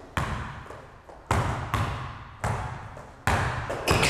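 Basketball dribbled hard on an indoor court: five bounces at uneven spacing, closer together near the end, each ringing briefly in the gym.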